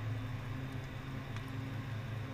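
A steady low hum with a faint hiss over it and a couple of soft clicks.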